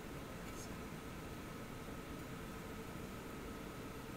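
Faint steady hiss with a thin steady hum: room tone while nothing audible happens.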